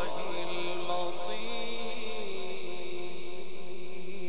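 Male Quran reciter chanting in the melodic tajwid style, holding one long note that slides slightly in pitch about one and two seconds in.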